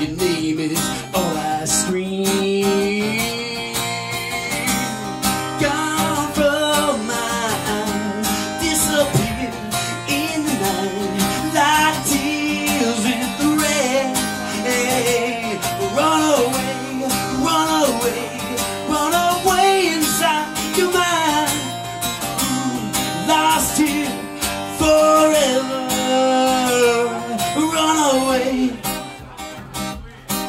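A man singing a slow rock ballad into a microphone, accompanied by a strummed acoustic guitar.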